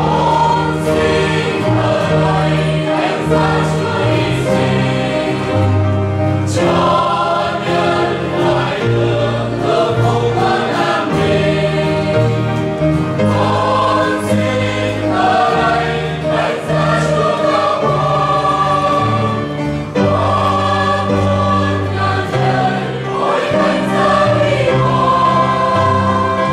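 Mixed choir of men and women singing a Vietnamese hymn in sustained phrases, accompanied by piano and guitar.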